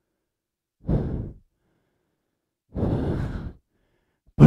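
A man breathing heavily twice during a pause in speech, a short breath about a second in and a longer one near three seconds.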